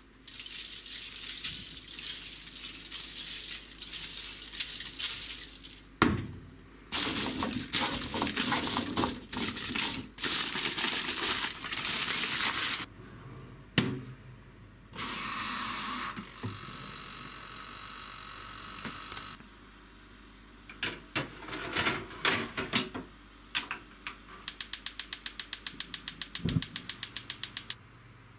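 Aluminium foil crinkling and crackling in long stretches as it is folded up around a tray of vegetables, followed by clatter at a toaster oven. Near the end, a toaster oven's mechanical timer dial is turned and gives rapid, even ratchet clicks for about three seconds.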